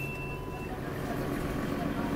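Mercedes-Benz Citaro bus's diesel engine idling with a steady low hum, heard from inside the saloon. A short electronic beep sounds at the start and stops after less than a second.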